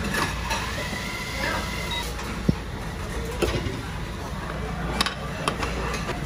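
Busy restaurant ambience: indistinct chatter from other diners over a steady low hum, with a couple of short sharp knocks, such as tableware on a table.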